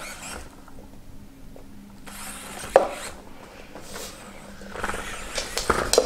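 Electronic dog toy knocking and scraping on a wooden floor as a dog noses and mouths it, with one sharp knock about three seconds in and several more near the end, over a faint steady hum.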